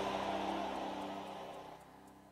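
A sustained chord of several steady notes, most likely a church keyboard or organ pad, fading out gradually until it is nearly gone by the end.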